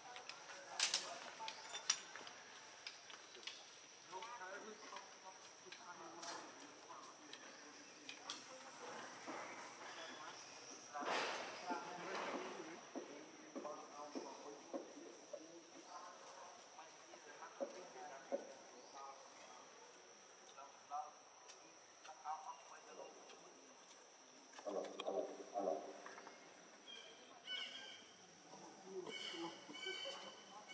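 Indistinct people's voices talking on and off, too faint to make out words, over a steady high-pitched tone in the background.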